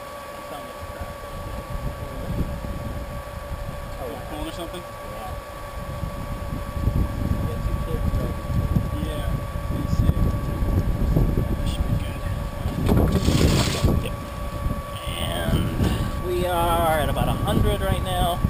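Small electric brewing pump humming steadily as it recirculates wort through a plate chiller. Wind buffets the microphone, heavier from about six seconds in, with a strong gust a little past the middle.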